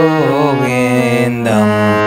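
A man singing a sustained, ornamented devotional bhajan melody in Asavari raga without clear words, over the steady held reed notes of a harmonium.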